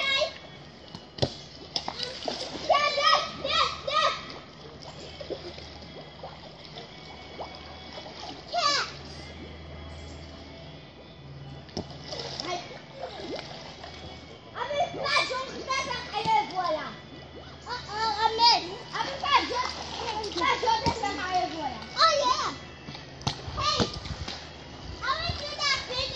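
Children calling out and shrieking in high voices while playing in a swimming pool, with water splashing around them.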